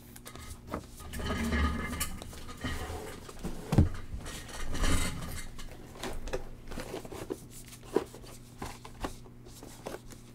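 A stack of baseball cards being flipped through by hand: cardstock sliding and rustling against cardstock, with a few sharp clicks or taps, the clearest about four, five and eight seconds in.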